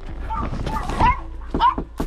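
A dog barking several times in short, pitched barks.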